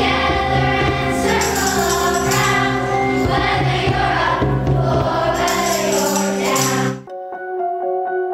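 A large children's choir singing with accompaniment. About seven seconds in it cuts off abruptly, and a quieter instrumental piece begins with evenly spaced, ringing keyboard-like notes.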